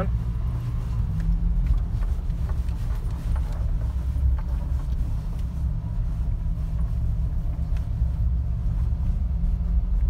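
Steady low rumble of a 1988 Dodge Raider's engine and drivetrain, heard from inside the cab, as the truck is being shifted into four-wheel-drive low.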